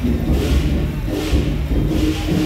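Temple procession percussion music, with cymbal-like crashes about once a second over a dense low rumble and a steady held tone.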